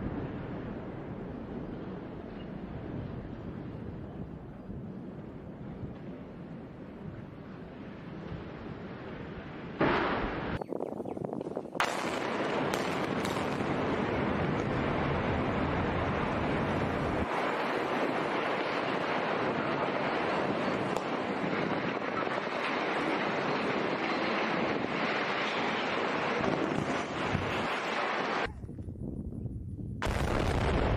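Demolition of concrete power-plant smokestacks by explosive charges: a rumbling roar as a chimney topples, then two sharp bangs about ten and twelve seconds in, followed by a louder, steady roar of collapsing structure.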